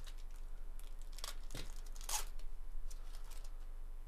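Foil wrapper of a trading card pack being torn open and crinkled by gloved hands, in a string of short rasps, the loudest about two seconds in.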